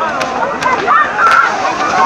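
A crowd shouting and yelling while a torito's fireworks go off, with three sharp firecracker cracks in the first second and a half.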